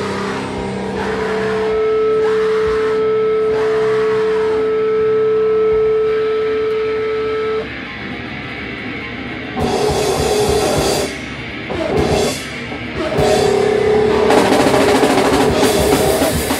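Live heavy rock band with distorted electric guitar, bass guitar and drum kit. A single note is held for about six seconds over the band, then drops out, followed by short stop-start hits, and the full band comes back in loud near the end.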